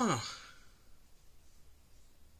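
A woman's breathy "huh" falls steeply in pitch and trails off as a sigh in the first half-second, followed by quiet room tone.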